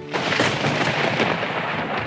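Storm sound effect: a steady rush of heavy rain that starts abruptly and slowly eases off, with a thunder-like rumble.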